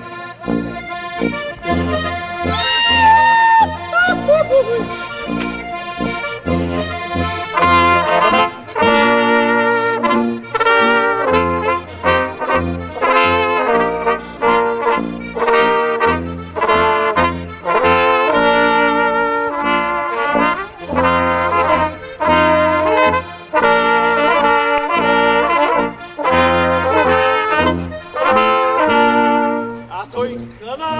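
A small folk brass band of flugelhorn, trumpets and tuba playing a tune in Austrian folk style, the horns carrying the melody over the tuba's bass notes.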